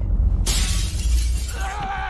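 Film sound effect: a sudden loud crash with a deep boom, then a long noisy smash from about half a second in, in the manner of breaking glass. Sustained music tones come in near the end.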